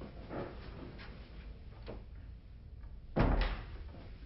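A door being opened, with a loud double clunk of the latch and door about three seconds in, after a few faint knocks.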